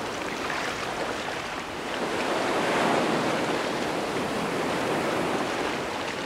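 Sea surf washing in over a shallow beach: a steady rushing of water that swells about two seconds in, then eases back.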